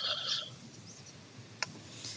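A short, high squeak lasting about half a second at the start, then a single faint click about one and a half seconds in, over quiet room tone.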